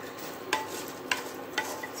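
Spatula stirring rice with vegetables in a frying pan over a steady sizzle, knocking against the pan three times about half a second apart.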